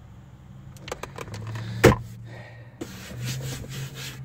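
A few plastic clicks, then one sharp knock near the middle as a 2008 Honda Accord's center-console armrest lid is handled and shut, followed by a hand rubbing over its newly recovered pad, over a low steady hum.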